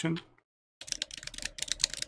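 Typing on a computer keyboard: a quick, uneven run of key clicks starting just under a second in.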